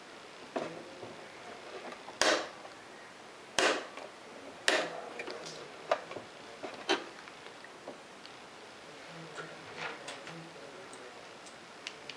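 Sharp plastic clicks and knocks from CISS cartridges being pressed down to seat in an Epson Stylus S22 printer's carriage and from the plastic parts being handled. About six distinct clicks in the first seven seconds, a few softer ones later.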